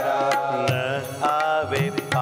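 A Hindi devotional verse sung to a melody, with held, wavering notes, accompanied by tabla strokes keeping time.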